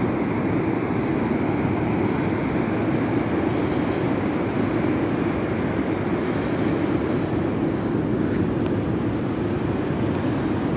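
Steady roar of breaking ocean surf, an even rushing noise without pause.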